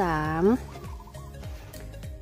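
A woman's voice drawing out a single spoken word for about half a second, then faint background music.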